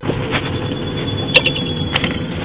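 Police car driving along a street, its engine and road noise heard from inside the cab as a steady rumble with a faint steady electrical tone. A sharp click sounds about a second and a half in.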